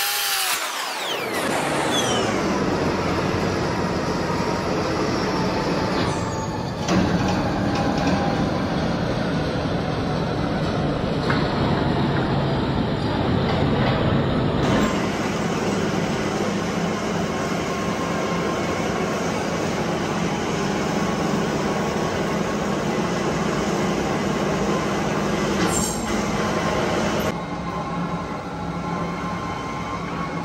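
Steady running noise of heavy machine-shop equipment, a continuous grinding rumble with a low hum. A brief sweeping tone at the start fades over the first two seconds, and the sound changes abruptly about 7, 15 and 27 seconds in.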